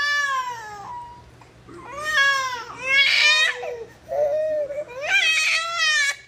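A baby crying: a string of loud wailing cries broken by short gaps, the first one falling in pitch.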